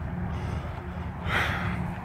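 A steady low mechanical hum, with a short breathy rustle about a second and a half in.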